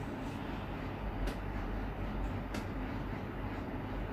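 Steady low background rumble and hiss, with two faint clicks about a second and two and a half seconds in.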